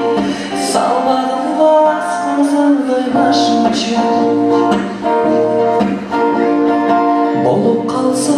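A man singing to a strummed acoustic guitar.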